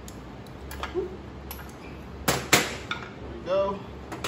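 Parts of a soft-serve machine's dispensing door being handled and set down on a stainless steel table: a string of sharp clicks and clinks, the two loudest a little past halfway.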